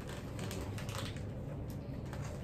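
Faint scattered clicks and light rustling of hands handling gingerbread house kit pieces and their wrappers, over a low room hum.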